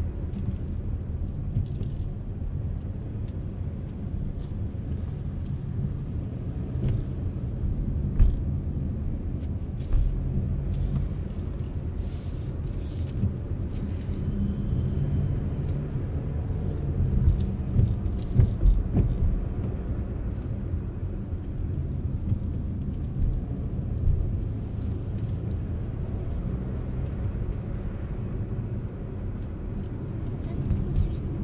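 Steady low rumble of a car's engine and tyres heard from inside the cabin while driving, with a few brief knocks and bumps along the way.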